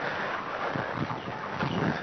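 Outdoor background noise with light footsteps on a paved path.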